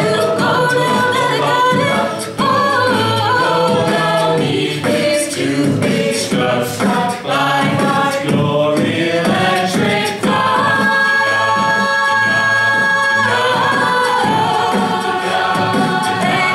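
Mixed a cappella group singing: a female lead vocal over the group's layered backing vocals and beatboxed percussion, with a long high note held for about three seconds around ten seconds in.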